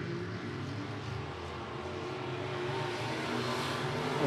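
Engines of IMCA Sport Modified dirt-track race cars running at racing speed around the oval, slowly growing louder over the last couple of seconds as the cars come nearer.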